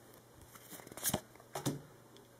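Trading cards being handled in the hand: the stack rustles as one card is slid off to bring up the next, with two short, sharp flicks of card stock, one about a second in and one near the end.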